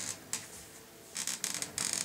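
Handling noise from an electric guitar being turned and set into a floor guitar stand: a light click early on, then a quick cluster of rustles and small knocks in the second half.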